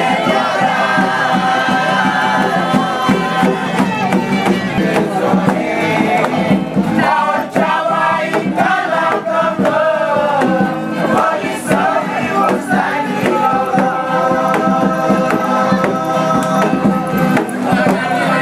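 Music with a group of voices singing, going on steadily while people dance.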